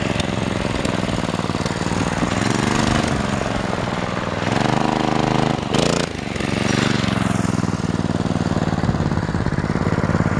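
Small single-cylinder four-stroke engine of a Baja Doodle Bug mini bike trike, its governor removed, running under way through a torque converter. The pitch climbs as it revs up about four seconds in, drops sharply near six seconds, then climbs again and holds steady.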